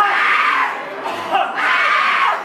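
Loud yelling voices in repeated bursts, each about a second long, with a short drop between them.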